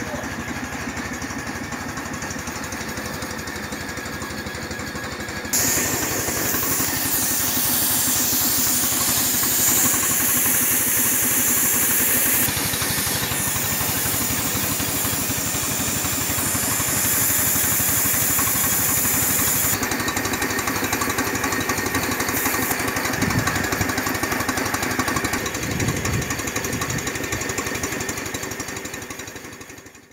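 A motor running with a fast, even pulsing. About six seconds in a loud rushing hiss joins it suddenly, eases off near twelve seconds and stops about twenty seconds in.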